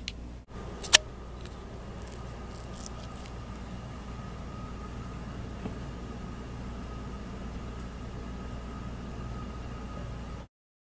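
Steady low hum and background noise with a faint steady high tone, and one sharp click about a second in.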